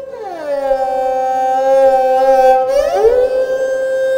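An esraj's bowed note slides down in a slow meend, holds for about two seconds, then glides back up, over a steady drone, in an unaccompanied aalap in Raag Puriya Dhanashri.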